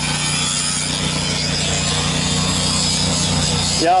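An engine running steadily at a constant speed, a low hum with a hiss over it.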